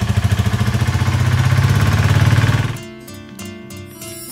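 Auto-rickshaw engine running loudly with a rapid, even low pulsing, cut off abruptly at under three seconds. Quieter background music follows.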